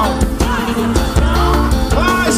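A live forró band playing a song: a drum kit keeping a steady beat over bass and other instruments, with melody lines gliding above.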